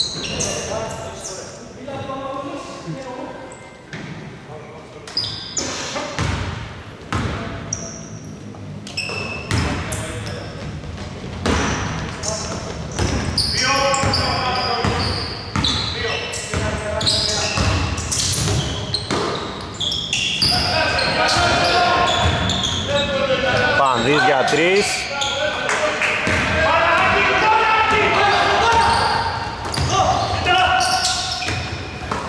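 A basketball bouncing on a hardwood court in a large indoor hall, with repeated sharp strikes, mixed with people's voices echoing around the hall, which grow busier and louder in the last third.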